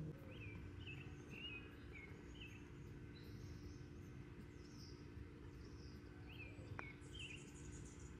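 Quiet outdoor ambience with small birds giving short chirps, a run of them in the first few seconds and a few more near the end, over a faint steady low hum. A single light click about seven seconds in is a golf club striking the ball on a chip shot.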